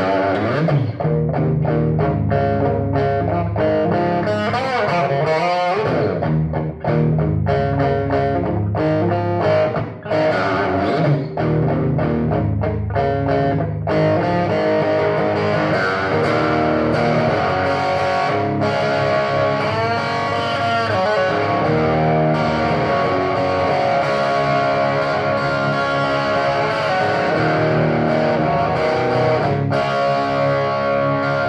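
Single-pickup SG Junior-style electric guitar strummed through a Marshall tube amp head and speaker cabinet. It starts with short, choppy chords separated by brief gaps, then moves to longer ringing chords with a few string bends about two-thirds of the way in. The tone comes through a speaker that the player calls terrible.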